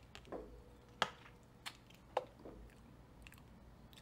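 Faint wet mouth clicks and lip smacks, about five short ones spaced through the pause, from someone tasting the aftertaste of a soda.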